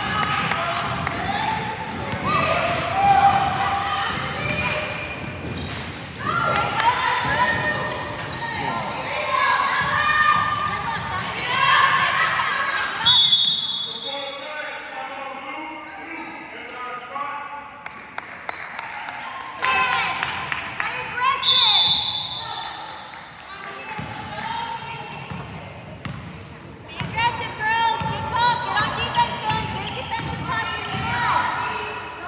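A basketball dribbled on a hardwood gym court during play, echoing in a large hall, with voices calling out all through. A brief high-pitched tone sounds twice near the middle.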